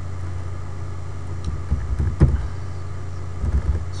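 A few scattered computer keyboard key clicks as a word is typed, over a steady low hum.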